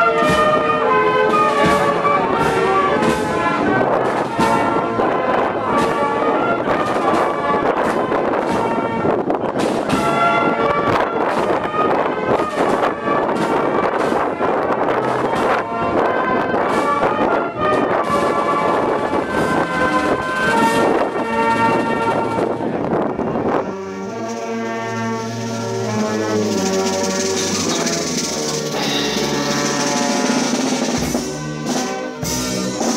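Brass band with drums playing a march, the drum strokes steady under the brass. About three-quarters of the way through, the sound changes abruptly to a softer passage with cymbals.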